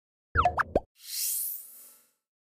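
Short electronic sound-logo effects for a news channel's end card. About half a second in there are quick pops with a low thud and fast pitch glides, and then an airy high whoosh that sweeps upward in pitch and fades out near the end.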